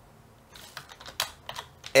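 Computer keyboard being typed on: a quick run of separate key clicks that starts about half a second in.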